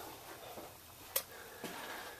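Quiet room tone in a small workshop, broken by one sharp click about a second in.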